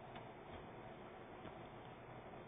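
Near silence: faint room hiss with a few soft, irregular clicks.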